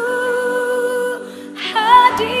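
Live worship band with vocalists singing a slow worship song: a voice holds one long steady note for about a second, the music dips, and a new sung phrase begins near the end.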